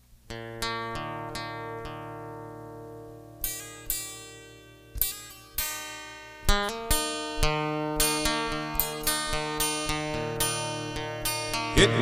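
Acoustic guitar intro played on a 1964 Martin D-28. A few picked notes are left to ring and fade, then a steady picked pattern takes over about halfway through, the notes coming faster.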